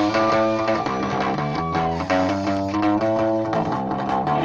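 Live rock band playing amplified electric guitars and bass guitar through a PA, a guitar-led passage of clear picked notes with the drums and cymbals held back.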